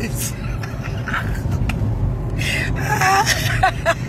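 A person's voice making short, high-pitched vocal sounds in the second half, over a steady low rumble.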